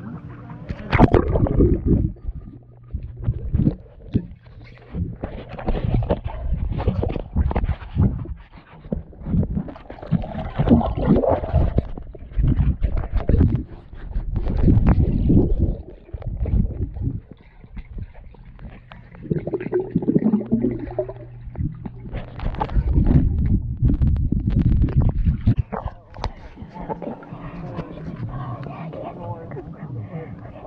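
Muffled water sounds picked up by an action camera in and just under a pool's surface: irregular sloshing, gurgling and bubbling in bursts, with knocks as the camera is moved through the water.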